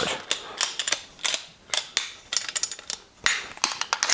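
Irregular series of sharp metal clicks and knocks from an AR-15 pistol's takedown barrel assembly being fitted back onto the receiver and latched by its levers.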